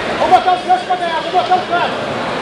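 A high-pitched voice shouting a quick run of about seven short, repeated calls, over the steady crowd babble of a large sports hall.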